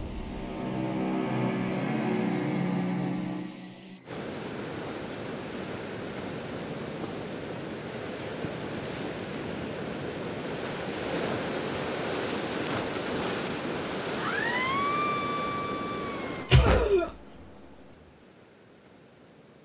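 Film soundtrack: a sustained music chord that cuts off abruptly about four seconds in, giving way to a steady rush of waves. Near the end a whistling tone rises and holds, then a sudden loud hit with a downward sweep.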